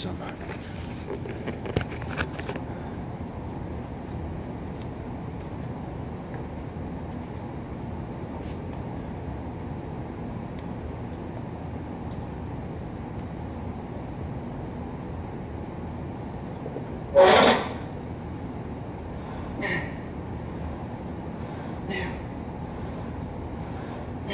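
Steady hum of gym room noise, with clicks and knocks near the start. Later come a loud grunt and three fainter, sharper exhales about two and a half seconds apart, from a man pressing a plate-loaded leg press.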